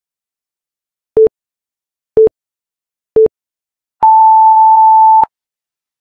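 Electronic interval-timer countdown beeps: three short, lower beeps a second apart, then one longer, higher beep of just over a second. The long beep marks the end of the exercise interval and the start of the rest period.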